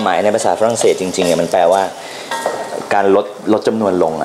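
A wooden spatula stirring chopped vegetables and herbs in a stainless steel pot of reducing sauce base, under a man's talking.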